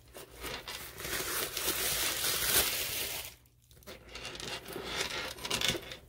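Hands handling a zipped leather crossbody bag, crinkling and rustling as the zip is opened wider and the inside is handled. It comes in two spells with a short pause just past halfway.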